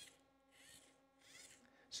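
Faint whirring of hand-turned Lego electric motors in two short swells that rise and fall in pitch. The turned motor acts as a generator, driving the second motor wired to it.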